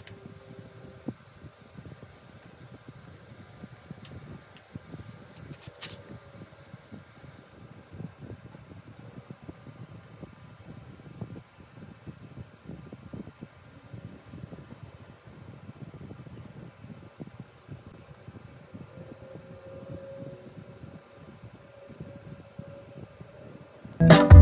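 Faint steady fan-like room noise, with quiet handling sounds and a few light clicks as fingers press a tempered-glass screen protector onto an iPad.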